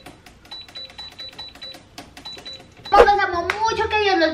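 Rapid, uneven clicking with a faint high-pitched beeping tone that switches on and off, for about three seconds. Then a woman's voice comes in loudly.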